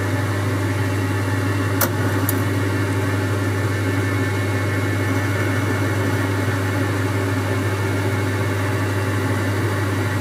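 Boxford metalworking lathe running steadily, a low motor and gear hum with a few steady higher tones, as a tool cuts at the centre of a spinning bar's end face. Two short sharp clicks about two seconds in.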